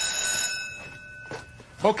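A studio set bell ringing, cutting off about half a second in and dying away: the signal on a film set that a take is about to roll. A man's voice starts speaking at the very end.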